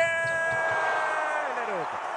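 A Spanish-language basketball commentator's drawn-out shout of '¡Bien!' after a dunk, held on one high pitch and sliding down near the end, over arena crowd noise.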